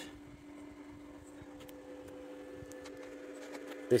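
A faint, steady hum made of two constant tones over light background noise.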